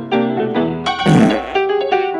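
Solo piano music playing quick, short notes, with a brief noisy burst about a second in.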